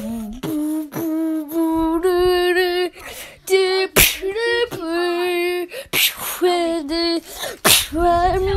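A person's voice making wordless held notes, mostly on one pitch, in beatbox style, broken by short sharp hissy bursts of mouth percussion.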